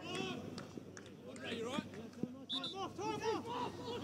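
Players' voices calling out across an outdoor football pitch, several shouts overlapping at a distance, with a faint sharp knock about two seconds in.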